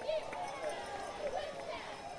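Indistinct chatter of many voices at once from a football stadium crowd and sideline, with no single voice standing out.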